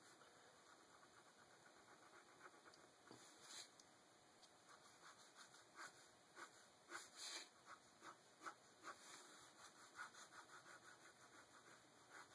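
Faint ballpoint pen strokes on paper: a run of short, quick scratching strokes.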